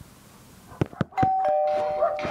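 Two-tone doorbell chime: a higher ding followed about a quarter second later by a lower dong, both ringing on, just after a couple of quick clicks.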